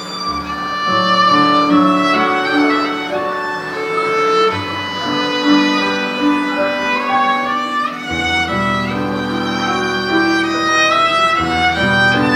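A bowed string instrument of the violin family plays a slow, legato melody over digital piano accompaniment. The piano's low bass notes change about every four seconds.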